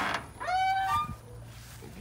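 The hinges of a bus's back door squeaking as the door swings open: one drawn-out squeal about half a second in, dropping in pitch and then holding before it stops.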